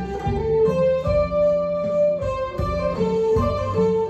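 Solid-body electric guitar with humbucker pickups playing a single-note melody line, each note held for a beat or so before stepping to the next pitch.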